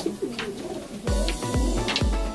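Racing pigeons cooing in the loft, over background music; a steady deep bass beat comes in about a second in.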